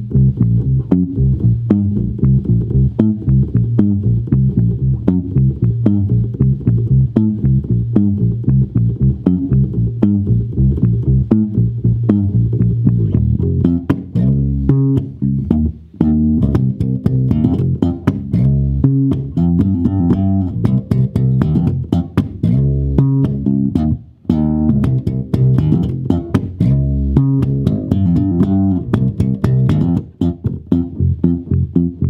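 Mid-1960s Hofner 500/6 electric bass played through an amplifier with both pickups on: a busy, continuous line of plucked notes, with brief breaks about 16 and 24 seconds in.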